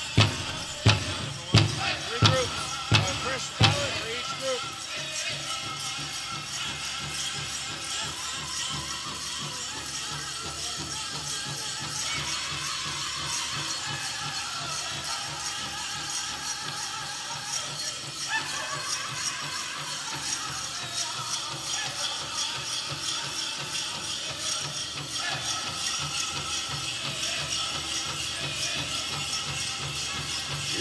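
Powwow drum struck in heavy, evenly spaced beats, about one every 0.7 s, stopping about four seconds in. After that comes a steady jingle and rattle, typical of the bells on dancers' regalia, with crowd voices beneath.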